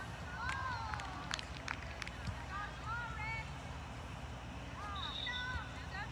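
Soccer players shouting short calls to each other across the field during play, over a steady outdoor rumble. There are a few sharp knocks about a second or two in, and a short high steady tone near the five-second mark.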